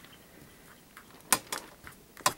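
Quiet handling, then one sharp click about a second and a half in and a couple of fainter ticks: a metal staple leg being pressed flat against the paper of a stapled sketchbook spine.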